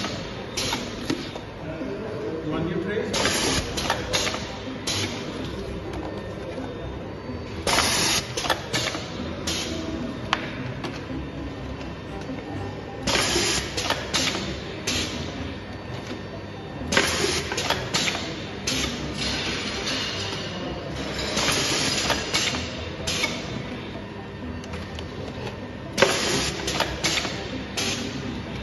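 Volumetric pasta depositor running through its deposit cycles: a burst of air hiss from its pneumatics every few seconds as each portion is dropped into a bowl, over steady machine noise.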